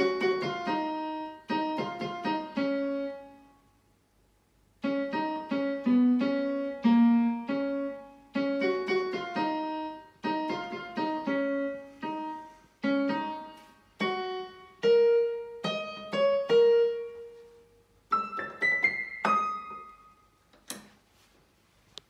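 Portable electronic keyboard played with a piano voice: a short phrase of notes, a pause of about a second, then a longer melody that climbs higher before it stops. A single sharp click comes near the end.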